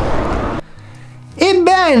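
Outdoor rumble and hiss on a body-worn camera's microphone, cut off suddenly about half a second in. It gives way to a quiet, steady low tone, and then a man starts speaking.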